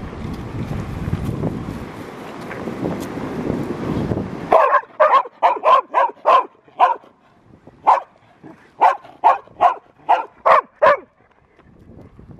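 A low rustling noise, then from about four and a half seconds in a field-type Labrador Retriever barks about fifteen times, sharp and loud, in quick runs. The dog is barking in excitement for the ball to be thrown.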